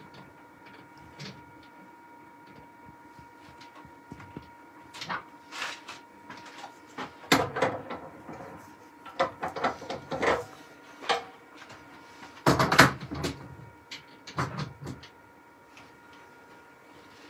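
Scattered metallic clunks and knocks of a steel four-jaw lathe chuck being handled and offered up to the lathe's threaded spindle, among other workshop handling knocks, the loudest cluster near the end. A faint steady tone sits underneath.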